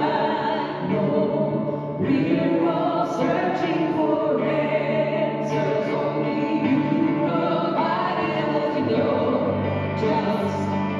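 Gospel worship song: a man singing into a microphone with other voices and instrumental accompaniment, played through the church's sound system.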